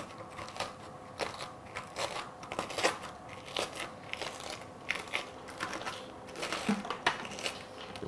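Speculoos biscuits being crushed in a small bowl: irregular crunching and crackling as the crisp biscuits break into crumbs and powder.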